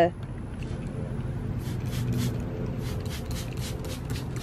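Trigger spray bottle squirting a bleach-and-water mix in a quick series of short hisses, starting about a second and a half in, over a steady low rumble.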